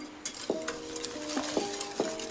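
Wire balloon whisk beating melted butter into a runny egg batter in an enamel bowl: a fast, continuous wet swishing with several sharp clicks.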